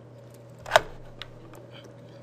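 A single short, sharp click about three quarters of a second in, followed by a fainter tick, over a steady low electrical hum.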